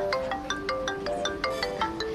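Smartphone ringing with an incoming call: a quick marimba-style ringtone melody of short bright notes, about five a second.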